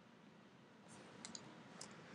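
Near-silent room tone with a few faint computer mouse clicks in the second half, as the pointer clicks into a text box.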